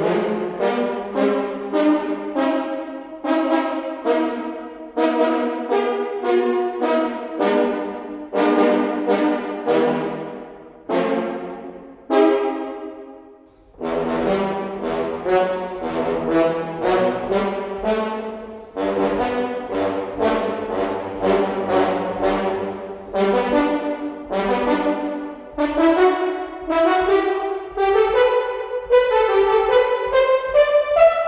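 Sampled pair of French horns from Audio Imperia's Fluid Brass library, played as short, detached notes in quick passages. There is a brief pause about halfway through, and a run climbing in pitch near the end.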